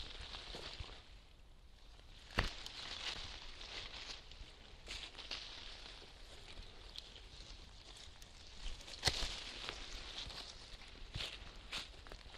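Hand pruning shears snipping through young shoots on a fruit tree, with leaves rustling as the branches are handled. Two sharp cuts stand out, one about two seconds in and one about nine seconds in, among a few fainter clicks.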